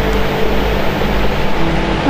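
Steady background noise with a low hum underneath, as from a fan or other running appliance in the room.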